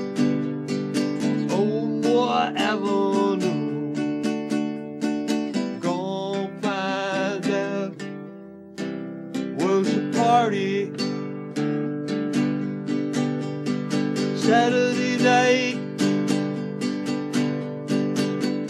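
Acoustic guitar strummed in a steady rhythm, with a man singing lines over it at intervals and the playing thinning briefly about eight seconds in.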